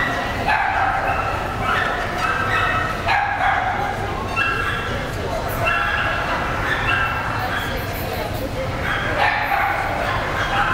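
Dogs yipping and whining in a show hall, with short high calls repeating every half second to a second, over a murmur of voices.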